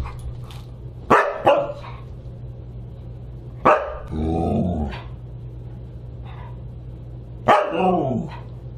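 A Siberian husky barking in play. Two quick barks come about a second in, then another bark runs into a drawn-out, lower-pitched call of about a second just before the middle, and a last bark comes near the end.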